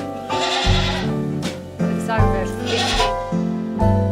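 Background music with steady held notes, over which an Angora goat bleats twice: once about half a second in and again near three seconds in.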